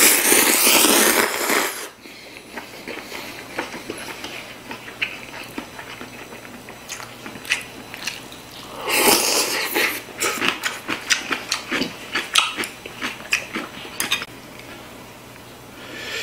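Noodles slurped loudly for about two seconds, then wet chewing and lip smacks. A second slurp comes about nine seconds in, followed by a run of quick, smacking chews.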